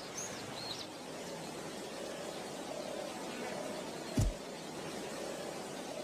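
Faint steady ambient hiss after the music has stopped, with a few short high chirps in the first second and a single low thump about two-thirds of the way through.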